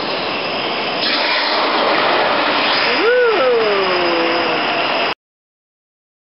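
Steady rushing roar of a gas flame tower firing, growing louder about a second in. A brief voice exclamation comes a little after three seconds, and the sound cuts off abruptly a little after five seconds.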